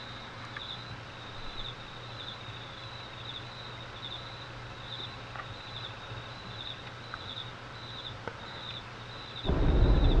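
Night-time outdoor ambience of crickets chirping, a short high chirp repeating evenly about every two-thirds of a second over a low hum and hiss. Near the end a sudden loud, deep boom breaks in: the impact of something falling from the sky onto the mountain.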